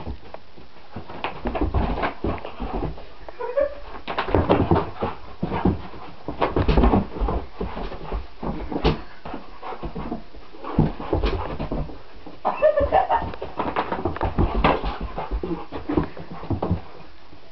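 Dog panting hard while paws thump and scuff the floor in quick, irregular bursts as a Weimaraner leaps and darts after a flashlight beam.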